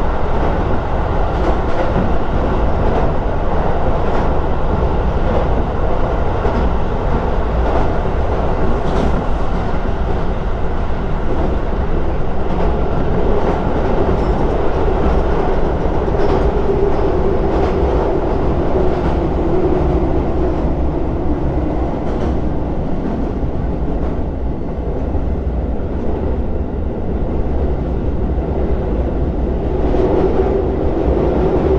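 Joban Line electric commuter train running at speed, heard from inside the carriage as it crosses a steel truss bridge: a steady rumble of wheels on rails, with a humming tone that wavers in pitch about halfway through.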